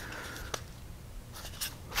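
Faint handling noise from hands turning over a thin metal-cased power bank, with a light click about half a second in and a few soft taps near the end.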